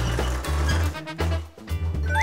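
Background music with a steady, repeating bass line.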